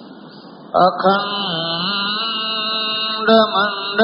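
Devotional chanting of a Sanskrit invocation, sung in long held notes. It begins about three-quarters of a second in after a quiet stretch, and swells briefly near the end.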